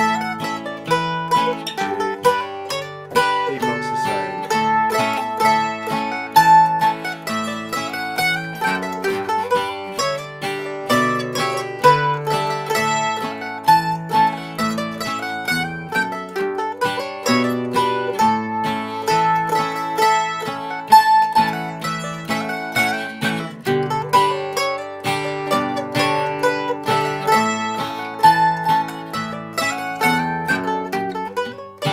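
Mandolin and acoustic guitar playing an old-time modal tune in A together at a slow, steady jam tempo. The plucked mandolin melody runs in repeating phrases over the guitar's lower chord notes.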